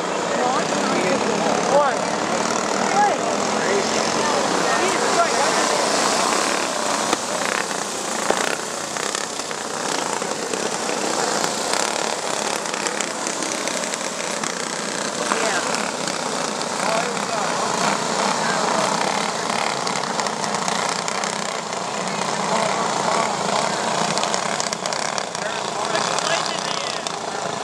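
A pack of flathead-engine racing go-karts running laps of a dirt oval, several small engines overlapping, their pitches rising and falling as they pass through the turns.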